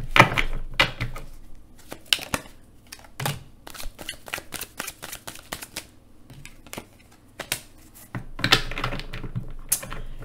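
A tarot deck being shuffled overhand by hand: an irregular run of sharp card slaps and flicks, busiest at the start and again shortly before the end.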